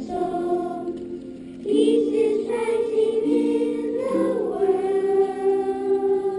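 A class of young children singing together in unison, a slow song with long held notes. The singing dips softer about a second in, then comes back louder.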